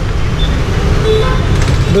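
Street traffic: a steady low rumble of passing vehicle engines, with a short vehicle horn toot about a second in.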